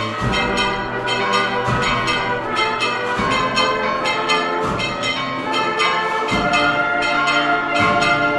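Processional band playing a march, with a deep drum beat about every second and a half, while bells ring rapidly.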